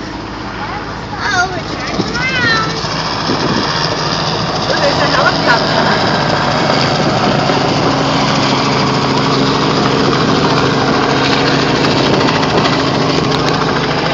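Steady engine noise with a low hum that grows louder a few seconds in and then holds. Short high voice-like calls sound over it early on.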